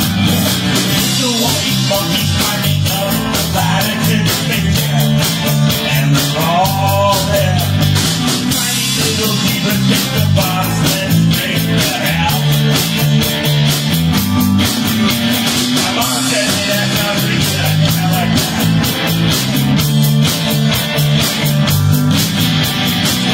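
Rock music from a full band, loud and steady, with a drum beat driving it throughout.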